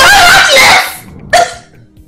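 A woman wailing loudly in distress: one long, high cry that breaks off about a second in, followed by a short sob.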